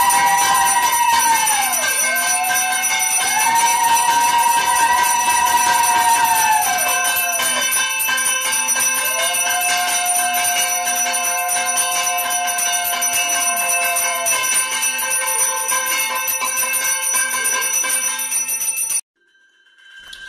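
A puja hand bell rung continuously, with three long notes from a conch shell (shankha), each held for several seconds and dropping in pitch as it ends. All of it cuts off abruptly near the end.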